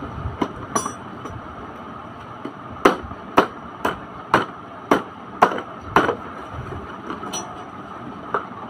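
Seven sharp knocks on hard plastic, about half a second apart, as the steering column of a plastic swing car is driven down into its socket in the car body.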